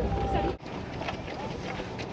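Wind buffeting the microphone with voices, cut off abruptly about half a second in. Then the light, irregular patter of many runners' footsteps on asphalt, with voices.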